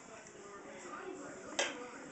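A toddler's hand slaps down once on a milk-covered wooden tabletop, a short sharp smack about one and a half seconds in, against faint low-level room sound.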